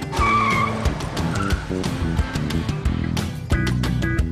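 A car pulling away with a short tyre squeal in the first half second, under background music with percussion.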